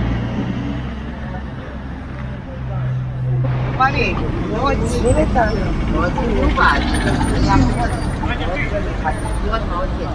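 Busy city street: a vehicle engine hums low and steady for the first few seconds, then passers-by talk over the traffic noise.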